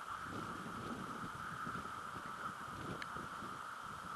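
Outdoor ambient noise over open water: a steady hiss with irregular low rumbling, and a single short click about three seconds in.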